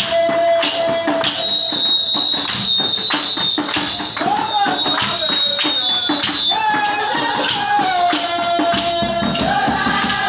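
Church worship music: voices singing over a steady percussive beat of handclaps and shaken percussion.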